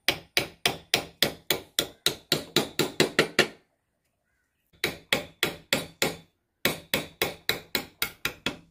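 A mallet tapping the handle of a carving gouge, driving it into wood to cut a relief. The sharp knocks come evenly, about three a second, in three runs separated by short pauses.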